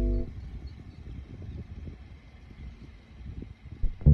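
A held music chord ends just after the start. Then comes a faint, uneven low rumble of outdoor background noise, with no music, until the guitar music starts again at the very end.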